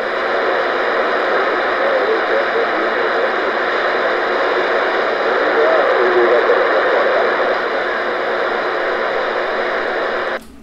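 CB radio receiver hiss: loud, steady band noise from the open receiver, with faint warbling tones in it, while he listens for a reply to his skip call in rough band conditions.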